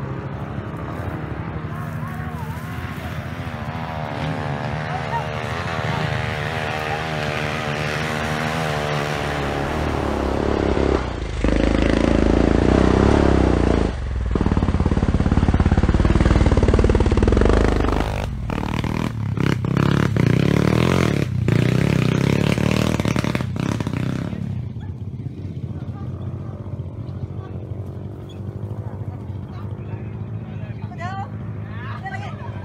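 Dirt bike engine revving up and down as it comes closer, loud for several seconds in the middle as it passes nearby, then dropping back and fading over the last few seconds.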